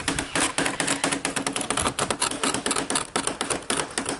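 A small knife blade scratching at the lead came joints of a leadlight window in rapid short strokes, several a second. The scratching cleans the oxidised surface off the lead down to bright fresh metal so that the joint will take solder.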